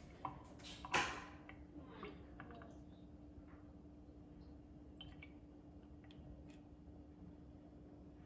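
Metal spoon clinking and scraping against a small aluminium baking pan while spreading cake batter, with one sharp clink about a second in and a few lighter taps after. A faint steady hum runs underneath.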